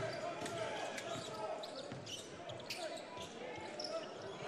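Arena sound of a basketball game: a basketball bouncing on the hardwood court as it is dribbled, with scattered short knocks over a low murmur of voices.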